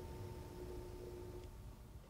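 Faint room tone: a low rumble with a steady hum made of two thin tones, the higher-pitched one stopping about one and a half seconds in.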